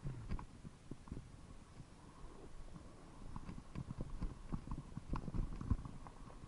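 Irregular knocks and thumps of travel over a rough dirt trail, shaken through a moving action camera, coming thicker and louder in the second half.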